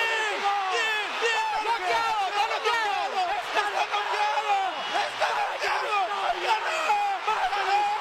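A high-pitched human voice sounding continuously, with no clear words.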